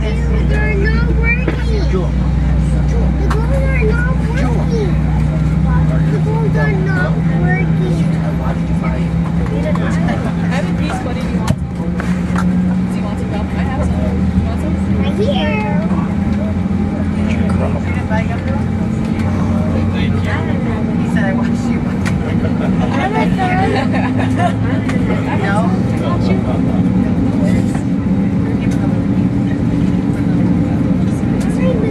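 Airbus A321's IAE V2500 engines running, heard inside the passenger cabin as a steady hum whose pitch slowly rises. A deep rumble under it drops away about six seconds in.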